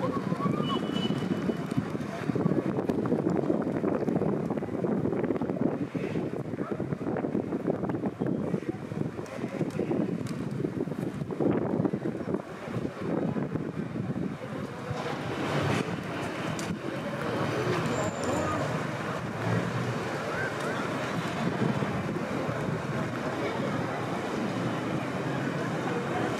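Outdoor city background noise: a steady, fluctuating wash of indistinct voices and general street sound, with wind buffeting the microphone.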